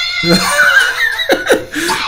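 A man laughing in short bursts, over a character's voice from the anime being watched.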